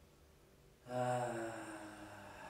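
Quiet room tone, then about a second in a single long chanted note begins abruptly, held steady on one pitch and slowly fading.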